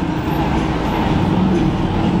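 Engine and exhaust of a lifted Chevrolet Caprice donk limousine on oversized wheels, a steady low rumble as it drives slowly toward the microphone.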